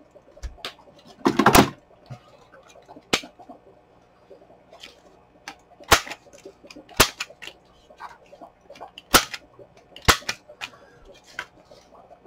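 Handheld corner rounder punch snapping through the corners of paper library pockets: a sharp click with each press, repeated about every one to two seconds.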